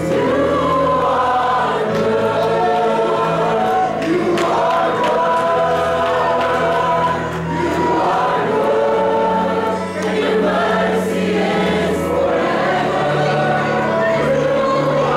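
Youth choir singing a gospel worship song with a soloist on microphone, over instrumental accompaniment whose low bass notes are held for a couple of seconds each.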